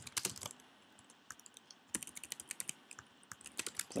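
Computer keyboard typing: short runs of key clicks, a burst at the start, a pause of about a second, then a quicker run through the second half.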